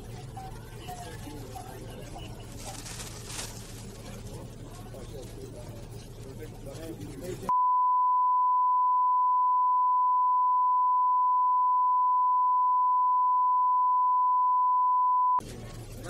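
Indistinct voices over a low hum, then, about halfway through, a steady pure beep tone that replaces all other sound for about eight seconds before cutting off: a redaction tone blanking the audio.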